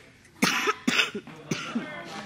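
A person coughing: three sharp coughs, about half a second apart.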